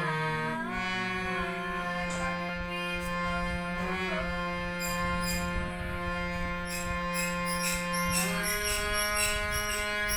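A boy singing a melody over his own harmonium, its reed notes held steadily underneath. Tabla strokes come in about five seconds in and grow busier toward the end.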